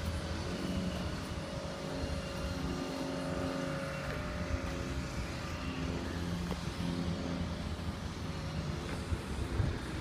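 A steady engine drone with several held tones over a low rumble, easing a little after the middle.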